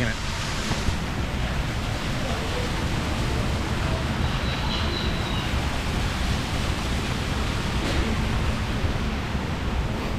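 Steady rushing of a small indoor waterfall splashing over rocks into a pool, a continuous even noise.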